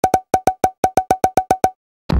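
Editing sound effect: a rapid run of short, identical pitched clicks, about ten a second with two brief breaks, stopping abruptly near the end.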